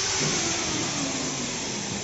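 Steady machine noise from a running vacuum homogenizing emulsifier mixer: an even motor hum and hiss.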